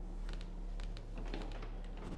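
A few light clicks and taps from a bedroom door being opened, over a steady low hum.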